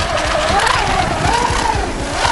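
Brushless electric motor of a Surge Crusher RC speedboat, on its upgraded 5-cell setup, whining at speed, its pitch rising and falling as the boat runs and turns through choppy water.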